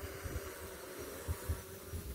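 Faint steady hum of a DJI Mavic 3 quadcopter's propellers as it flies at a distance, with gusts of wind buffeting the microphone.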